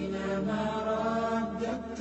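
Slow melodic vocal chanting with long held notes that bend slowly in pitch, a religious chant sung as the outro's soundtrack.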